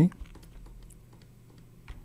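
Computer keyboard keys clicking faintly and irregularly over a low steady hum.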